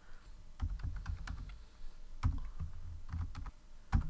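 Computer keyboard typing: irregular keystrokes as a username and password are entered, with a sharper, louder click near the end.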